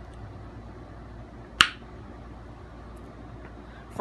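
A single sharp click about a second and a half in, over a steady low room hum.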